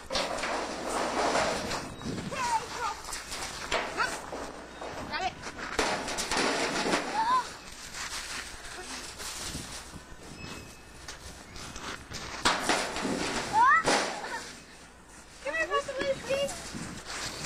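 Indistinct, overlapping voices of children and adults, with scattered shouts. A short rising squeal comes near the end.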